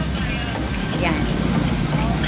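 Steady low rumble of street traffic, a motor vehicle engine running nearby, with a single spoken word about a second in.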